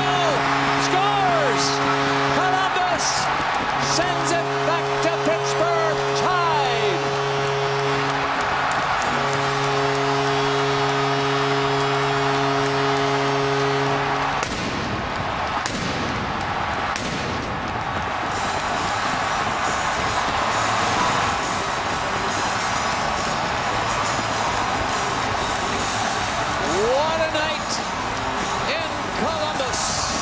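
Hockey arena goal horn sounding for a home-team overtime goal in three long, steady blasts that stop about halfway through, over a loud cheering crowd that keeps cheering after the horn ends.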